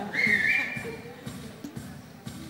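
A shrill whistle from someone in the concert crowd, about a second long and stepping up slightly in pitch halfway. Under it, the band plays a soft, low pulsing note about four times a second.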